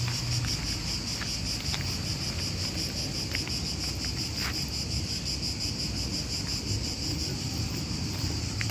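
Insects shrilling in a steady, high-pitched chorus with a fine, rapid pulse, over a low rumble of wind on the microphone.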